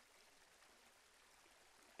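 Near silence: a faint, steady hiss.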